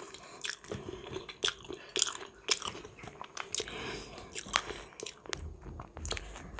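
Close-up eating sounds of a person chewing salted iwashi sardine taken by hand: irregular wet smacks and sharp mouth clicks, several a second.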